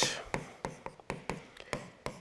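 Stylus tapping and scratching on a tablet screen while handwriting, a series of light clicks about three or four a second.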